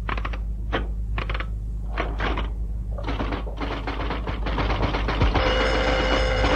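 Typewriter keys clacking in irregular runs, coming thicker about halfway through, as something is typed out. Near the end a steady engine hum comes in, like a car drawing up.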